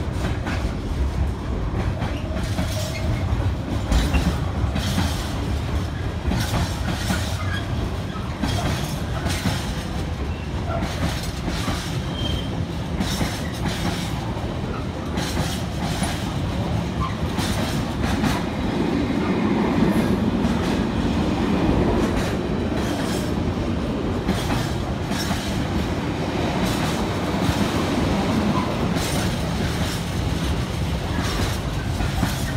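Container freight train's flat wagons rolling past at a steady speed: a continuous rumble with a regular clickety-clack as each wheelset passes over the rail joints. The rumble swells slightly about two-thirds of the way through.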